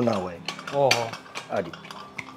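Metal cookware being handled: a few sharp metallic clicks and knocks, spaced out through the moment.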